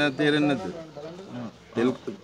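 A man speaking Sinhala in a low voice. His speech trails off with a falling pitch about half a second in, and he says a short word near the end.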